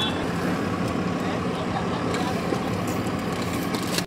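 Steady traffic and street noise heard from inside a car, an even hiss with a low hum under it.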